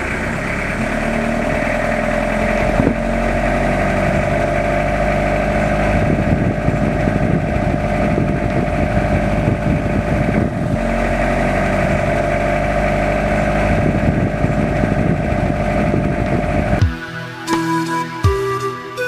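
A vehicle engine running steadily, with two short dips. Near the end it gives way to music.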